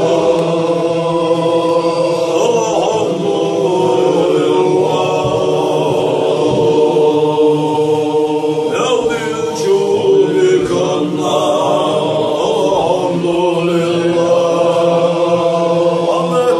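A group of men chanting a Chechen Sufi zikr together. The voices overlap in a steady, many-voiced chant that holds on long notes without a break.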